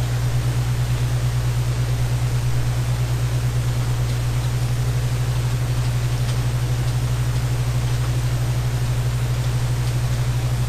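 A steady low hum under an even hiss, unchanging throughout, with no speech or music.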